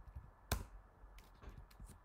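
Computer keyboard keystrokes: one sharp key click about half a second in, followed by a few faint taps.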